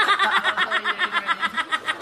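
A woman laughing hard in a fast, even run of short high-pitched laugh bursts, about eight a second.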